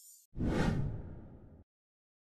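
A whoosh sound effect, about a third of a second in, sweeping down in pitch over about a second and a quarter and then cutting off suddenly.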